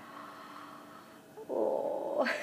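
An infant's short, raspy, growl-like throaty vocal sound, starting about a second and a half in after a quiet stretch, made while taking a mouthful of spoon-fed puree.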